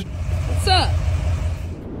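Steady low rumble of an idling car, with one short cry that falls steeply in pitch about two-thirds of a second in.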